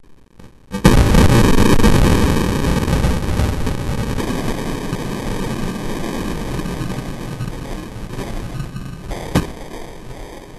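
A 12-gauge Mossberg 500A pump shotgun blast, slowed down into a long, deep roar. It starts suddenly about a second in and fades slowly over the following seconds, with one sharp crack near the end.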